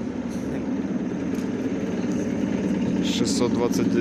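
ER9E electric multiple unit moving past along the platform: a steady low hum from the train's running gear and equipment, growing slightly louder. A person's voice is heard near the end.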